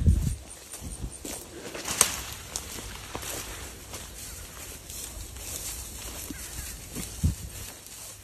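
Footsteps and rustling through tall grass and brush, with a few knocks: a sharp one about two seconds in and a low thump near the end.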